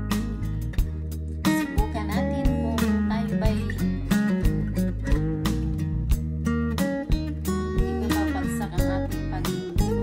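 Background music: strummed acoustic guitar over a steady beat.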